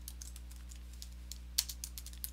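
Computer keyboard typing out a file name: a few scattered faint keystrokes, then a quicker run of key clicks near the end, over a steady low electrical hum.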